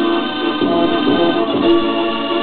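Music from a Mortier mechanical dance organ, played back from a cassette through the speakers of a Sanyo radio-cassette recorder, with held organ chords.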